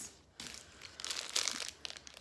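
Plastic snack wrapper of an Emmy's Organics cookie crinkling in short, irregular crackles as it is picked up and handled.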